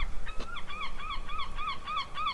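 A bird's rapid repeated honking calls, about three a second, each a short note that rises and falls in pitch.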